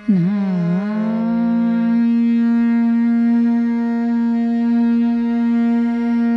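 A woman singing Hindustani classical vocal in raag Megh Malhar: a quick gliding ornament that dips and rises in pitch, then one long held low note, over a steady drone.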